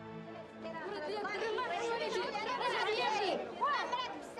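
Sustained music fading out in the first second, giving way to the background chatter of a small crowd, several voices talking over one another.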